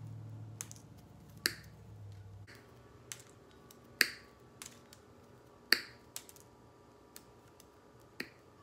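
Wire cutters snipping small plastic pegs off a plastic wreath frame: three loud sharp snaps, about two seconds apart, with several fainter clicks between them.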